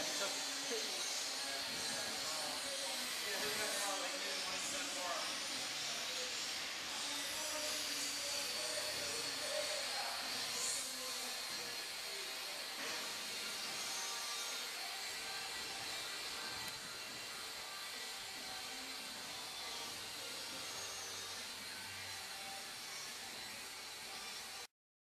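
Steady hissing noise, with faint indistinct voices in the first several seconds; it gets slightly quieter a little past the middle.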